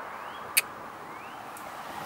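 Steady outdoor background noise with one short, sharp click about half a second in and two faint rising chirps.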